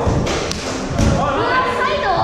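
Feet landing on a padded parkour floor and foam vault boxes: three thuds about half a second apart in the first second.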